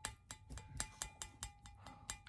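Faint, quick light clicks of a plastic measuring spoon tapping and scraping against a glass measuring cup, about six or seven a second, each leaving a thin ring from the glass, as thick vegetable glycerin is worked off the spoon into the liquid.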